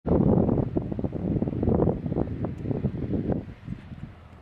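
Wind buffeting the camera microphone in irregular gusts, loud at first and easing off near the end.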